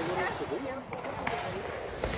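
Several people talking at once, no words clear, with a few short sharp knocks.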